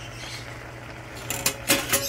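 Metal tongs clinking against a frying pan holding smoked duck and kimchi, a few quick clicks in the second half, over a steady low hum.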